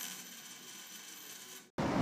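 Faint, steady high-pitched hiss with a thin whine in it and no bass, cutting off suddenly shortly before the end.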